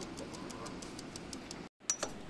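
Bicycle rear wheel spinning freely, its Shimano freewheel ratchet ticking evenly about seven times a second; the ticking cuts off abruptly near the end.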